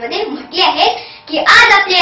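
A young girl's voice delivering a speech in Marathi, with a short break about halfway through.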